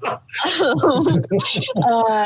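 People talking; the recogniser caught no words.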